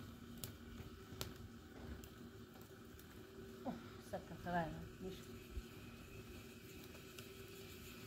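Mostly quiet, with a few faint clicks in the first seconds and two short voice sounds about four seconds in.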